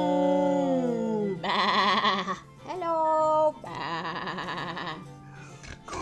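Two loud, quivering bleat-like cries, with a short rising call between them, over sustained background music.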